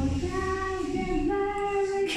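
A child singing a slow melody, holding long notes that step up and down in pitch.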